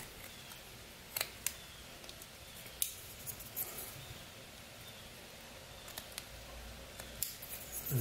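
Pocket knife cutting into an eastern white pine carving: a scatter of short, crisp snicks as the blade slices off shavings, spaced irregularly over several seconds, with faint scraping between them.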